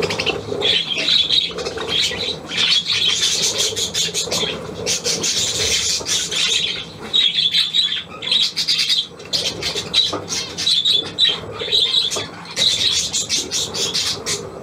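A flock of budgerigars chattering and squawking: a dense, continuous run of rapid high chirps with a few brief lulls.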